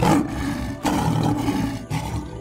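A lion roaring: two long roars back to back, the first starting suddenly and the second following just under a second in.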